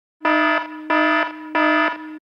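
Alarm buzzer sound effect: three loud, evenly spaced buzzing blasts about a third of a second each, over a steady lower buzz that runs between them.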